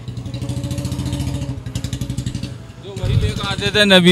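A motorcycle engine running close by at a steady pitch, then fading away about three seconds in.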